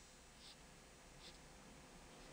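Near silence with faint strokes of a marker pen on a whiteboard, two short light scratches about half a second and just over a second in.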